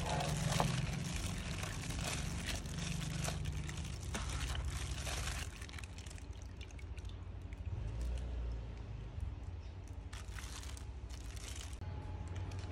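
Salmon belly strips being washed by hand in a plastic basin of water: irregular sloshing and splashing, with the crinkle of a disposable plastic glove.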